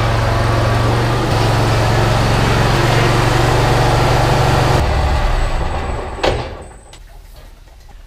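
John Deere Z-Trak zero-turn mower's engine running, its pitch stepping up slightly about a second in, then winding down and shutting off about five seconds in. A single clunk comes about a second later.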